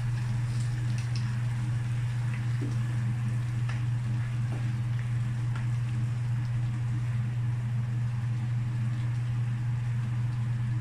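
A steady low hum throughout, over a faint sizzle from a frying pan of bottle gourd and ground pork, with a few light clicks from the pepper grinder and the spatula against the pan.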